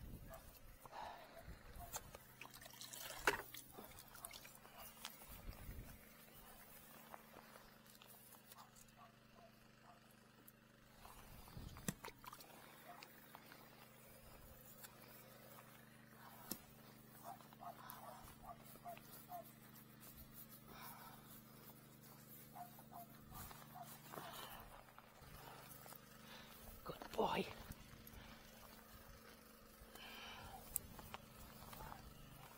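Quiet outdoor background with faint, distant voices over a steady low hum and a few small clicks; one brief louder sound near the end.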